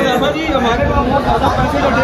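Several men's voices chattering at once, with indistinct talk rather than one clear speaker.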